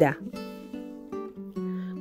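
Soft background acoustic guitar music: single plucked notes ringing on, one after another.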